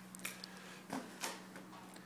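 Faint soft thuds and scuffs of a person doing a burpee on foam exercise mats: landing from the jump and dropping back down to the plank, a few short quiet sounds over a faint steady hum.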